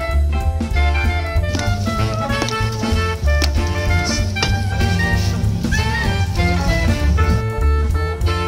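Background music: a jazzy track with a steady beat and a strong bass line.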